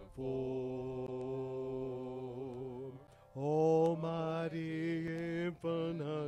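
Men singing a slow hymn through a PA, holding long notes with vibrato: one long phrase, a short break about three seconds in, then a second long held phrase.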